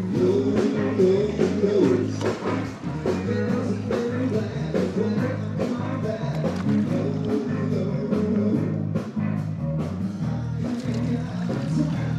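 A live band playing rock-and-roll style music, with a steady drum beat, a bass line and singing.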